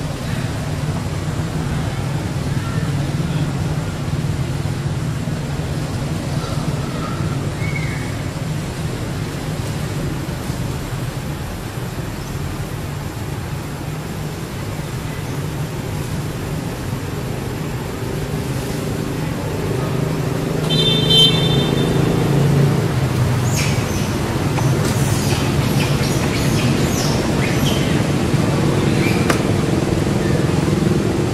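A steady low rumble like motor-vehicle traffic, with a short high horn-like tone about two-thirds of the way in and scattered sharp clicks near the end.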